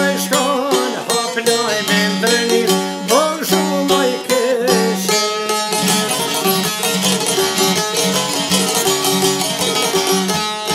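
Albanian folk instrumental played on çifteli and sharki, long-necked plucked lutes, with a steady drone note under a fast, ornamented melody. From about halfway through, the picking turns denser and more even.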